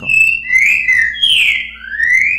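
Recorded songbird song played back from an edited training track: a phrase of clear, slurred whistles that slide up and down in pitch, the 'boca mole' song used to teach young birds.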